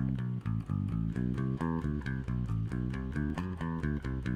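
Electric bass guitar played with a pick, every note an upstroke, in an even run of single notes about five a second. Each note starts with a short pick click.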